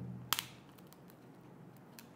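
A single short, crisp snap about a third of a second in, then a few faint ticks over quiet room tone: a thin wafer communion host being broken in the fingers over the chalice.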